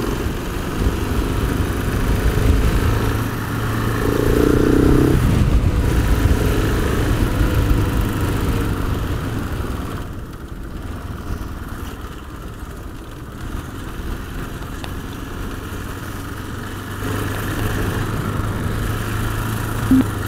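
KTM 690 Enduro single-cylinder motorcycle engine running under way on a rough road. It pulls harder through the first half, eases off about halfway through, and picks up again near the end.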